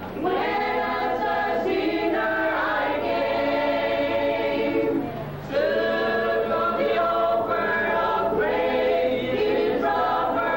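A small church choir of young voices singing a song together in long held notes, with a short breath between phrases about five seconds in.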